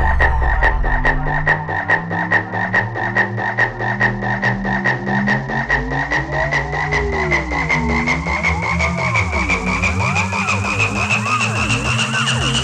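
Electronic trance track in a breakdown: the deep kick and bass fall away about a second and a half in, leaving a fast, even clicking pulse. Over it a high synth tone slowly rises in pitch, and lower synth sweeps bend up and down.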